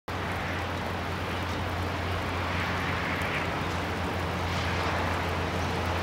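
Steady rushing roar of heavy rain and a distant waterfall running full in the downpour, with a low, even rumble underneath.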